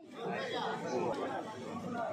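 Indistinct chatter of several people talking at once under a tent.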